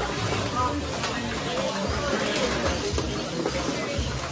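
Indistinct chatter of many people in a large room, with music playing underneath.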